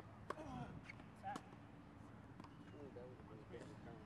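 Faint men's voices talking on a tennis court, with two sharp tennis-ball knocks about a second apart near the start.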